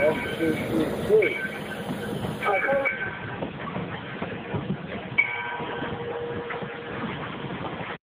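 Steady noisy running sound of the Valley Railroad No. 40 steam locomotive close by, with a voice briefly at the start.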